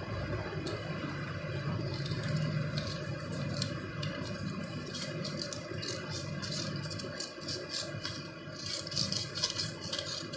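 Scissors cutting through a sheet of paper: short, quick snips that come thick and fast in the second half, over a steady low background hum.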